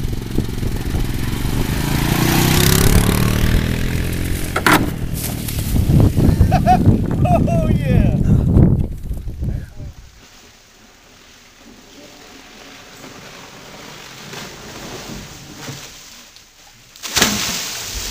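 A four-wheeler (ATV) engine runs for about the first nine seconds, with a few shouts over it. A quieter stretch follows. About a second before the end, a loud rush of splashing water begins as a person lands in water.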